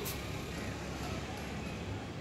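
Steady outdoor background noise with a low rumble, and one short click right at the start.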